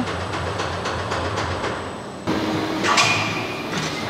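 Precast concrete plant machinery running with a steady rumbling noise. About two seconds in it changes to a steady machine hum, with a single clank near the three-second mark.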